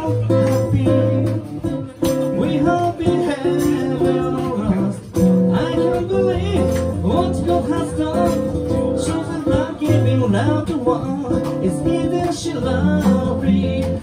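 Live acoustic band music: two acoustic guitars strummed and picked steadily, with a man singing the lead.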